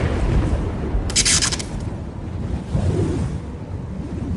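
Logo-reveal sound effect: a deep boom fading into a low rumble, with a short hissing burst about a second in.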